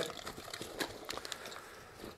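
Faint, scattered soft clicks and rustles of small tools and cases being handled and set down.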